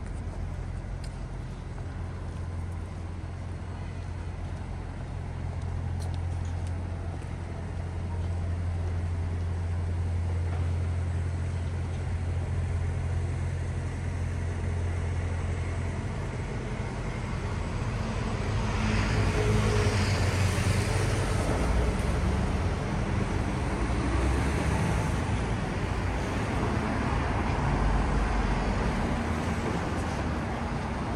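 City road traffic: a steady low engine hum for the first half, then louder passing vehicles, including a red double-decker bus, from a little past the middle to the end.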